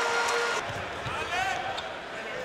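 Basketball arena crowd noise under a game broadcast. A steady held tone stops about half a second in, then a voice calls out over the crowd.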